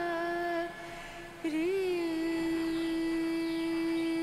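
Background music: a hummed vocal line held on one long steady note, dropping away briefly in the first second and sliding back up into the same note.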